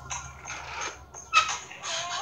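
Ab roller wheel rolling back and forth across a floor mat, a mechanical rolling sound, with one sharp, loud high-pitched sound about one and a half seconds in.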